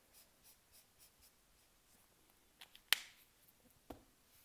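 Faint scratching of a felt-tip highlighter colouring in a letter on paper in quick short strokes, then a sharp plastic click a little before three seconds in as the highlighter's cap goes back on, and a smaller click just before the end.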